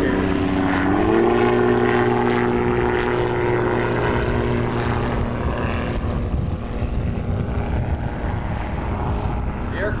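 Kestrel Hawk ultralight's engine and propeller in flight, the engine note rising in pitch about a second in and then holding steady. The tone grows fainter in the second half.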